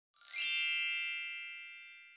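A single bright chime sound effect: a quick sparkling shimmer that swells into one ringing, many-toned chime and fades away over about two seconds.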